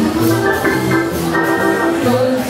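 Small live jazz band playing swing music, with a keyboard holding sustained chords over upright bass and drums.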